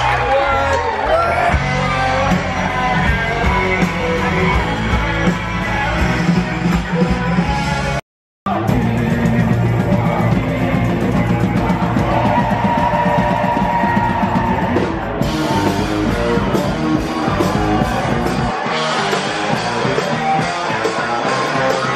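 Live rock band playing with singing, heard from near the stage in a large tent. The sound cuts out completely for a moment about eight seconds in.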